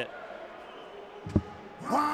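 A single dart striking the dartboard with a short, sharp thud about a second and a half in, against the low hum of a large hall.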